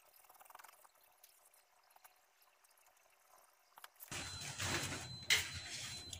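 Near silence with a few faint ticks for about four seconds. Then a rustle of cloth being handled starts, with scissors working through the cotton print fabric.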